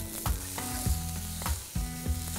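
Wooden spatula stirring grated fresh coconut and jaggery in a hot non-stick pan while the jaggery melts into the coconut. There is a light sizzle, and the spatula knocks and scrapes against the pan several times.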